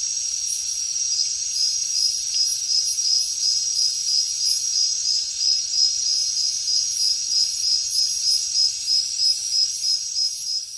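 Steady high-pitched insect chorus. From about a second in, a regular chirp joins it, about three times a second.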